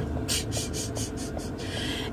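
Steady low rumble of a car driving, heard from inside the cabin, with a quick run of short, soft hissing sounds in the first second or so.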